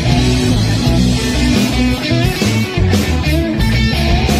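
A rock band plays a loud funk-rock jam: electric guitar over a bass line and drums with cymbals.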